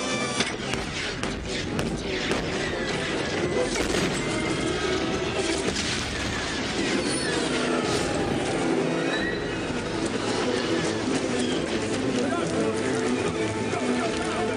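Film battle sound: repeated explosions and blaster fire over a music score, with the sudden blasts coming every second or two.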